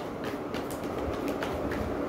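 A deck of tarot cards being shuffled by hand, the cards slapping and flicking against each other in a quick, uneven run of light clicks.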